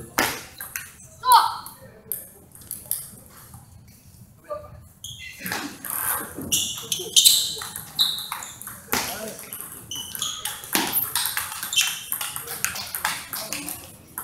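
Table tennis ball clicking off the paddles and the table during a rally, many sharp ticks in quick succession, densest from about five seconds in.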